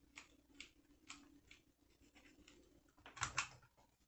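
Faint light clicks and rustling of hands working a hot glue gun against a yarn-wrapped craft wreath, with a brief louder cluster of clicks about three seconds in; otherwise near silence.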